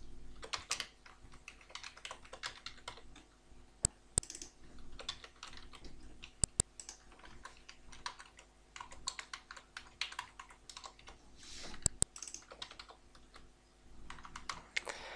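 Typing on a computer keyboard: irregular runs of keystrokes broken by short pauses, with a few sharper single clicks among them.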